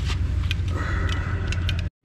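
Light clicks of plastic fishing bobbers being handled, over a steady low hum. The sound cuts off suddenly just before the end.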